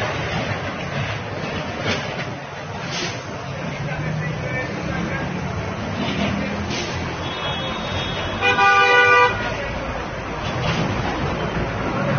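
Road traffic passing, with a car horn sounding once for about a second, about eight and a half seconds in; the horn is the loudest sound.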